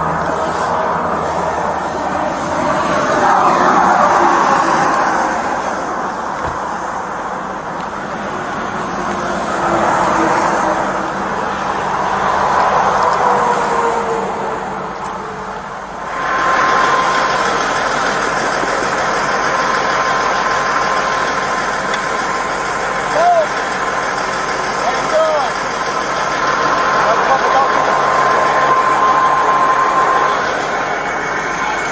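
Roadside vehicle noise from a stopped semi-truck and passing traffic, picked up by a police body camera, with indistinct voices in the first half. About halfway through a steady high hum sets in and runs on.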